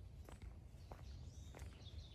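Faint footsteps on a dirt path, a few soft steps over quiet outdoor background noise.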